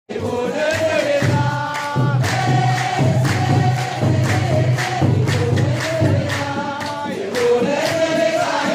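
A crowd singing a chanted church hymn together while a large kebero hand drum beats a steady rhythm, about one stroke a second.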